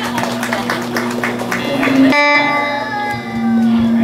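Live band music led by strummed guitar in a steady rhythm; about two seconds in, the song ends on a held final chord that slowly fades.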